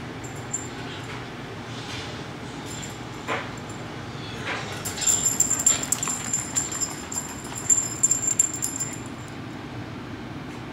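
Small terrier puppy whimpering, with a stretch of scratchy clicking and rustling through the second half.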